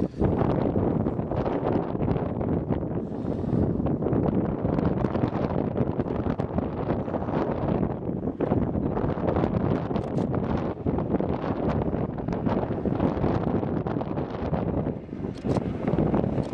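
Wind buffeting the microphone: a loud, gusting rumble that rises and falls throughout.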